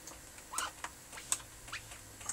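A few small clicks and brief squeaks as hands handle the wires and internal parts of an opened X-ray transformer head, the sharpest click a little past the middle.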